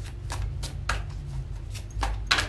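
A deck of tarot cards being shuffled by hand, the cards snapping and flicking against each other about three times a second over a steady low hum.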